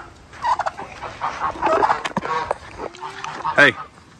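Domestic turkeys gobbling in two short, warbling bursts in the first two seconds.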